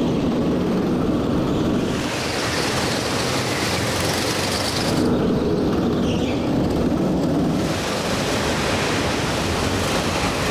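Steady rushing noise of a go-kart at speed picked up by an onboard camera, mostly wind buffeting the microphone over the kart's running engine. The tone shifts abruptly three times, losing and regaining its hiss.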